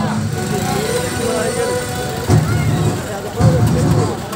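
Several men's voices talking close by around a car, over a steady low rumble that swells sharply twice near the end.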